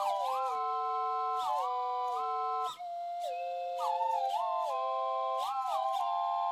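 Servo-driven automatic slide whistles playing a tune in several parts at once, about four pure whistle tones together, each note gliding smoothly into the next. There is a brief gap a little under three seconds in.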